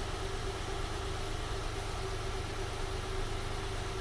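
A 2006 Acura TL's 3.2-litre V6 idling steadily while it warms up.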